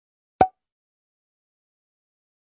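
A bottle cork popping out: one short, sharp pop a little under half a second in.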